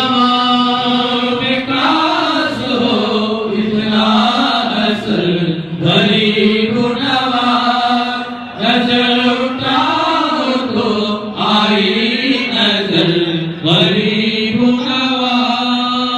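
A group of men chanting a Sufi ratib together in long, rising and falling melodic phrases, with brief breaks for breath between phrases.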